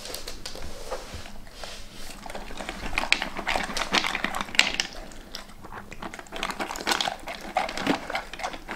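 Dog eating dry kibble from a slow-feeder bowl, with irregular crunching and clicking throughout. The bowl's ridges make him work around them and eat slowly.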